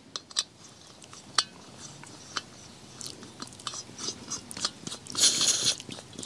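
Gas canister being screwed onto a camp stove's remote hose fitting: scattered small clicks and scrapes of the metal threads, then a short hiss of gas about five seconds in as the fitting seats on the canister valve.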